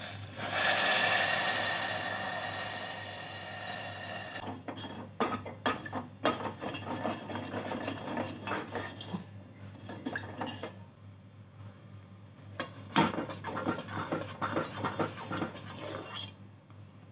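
Water added to jaggery in a hot steel pan hisses, fading over about four seconds. Then a metal spoon stirs the dissolving jaggery, scraping and clinking against the steel pan, busiest near the end.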